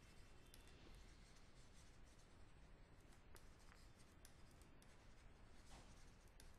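Near silence, with faint scattered ticks and scratches of a stylus writing on a tablet.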